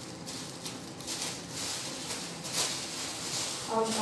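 Intermittent rustling and soft taps from hands handling dressing supplies. A woman's voice starts just before the end.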